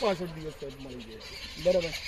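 A man's voice trailing off in long, falling hesitation sounds, pausing, then starting again near the end, over a faint steady high chirring.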